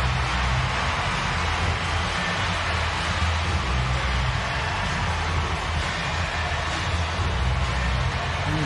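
Steady ballpark crowd noise cheering a home run, with music underneath.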